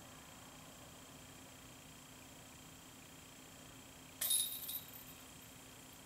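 Disc golf putt striking the hanging chains of a metal basket: one sudden jangle of chain about four seconds in that rings out for about a second. Under it is a faint steady hum.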